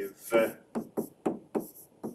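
A pen stylus tapping and clicking against a tablet's writing surface as a word is handwritten, about half a dozen short, sharp taps with quiet gaps between them.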